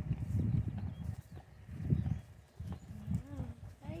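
A horse close to the microphone while being stroked: low, irregular bursts of sound in three or four short clusters.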